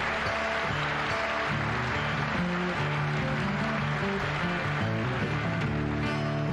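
Live country band playing the instrumental opening of a song right after a count-in, with acoustic guitar over a bass line that steps from note to note.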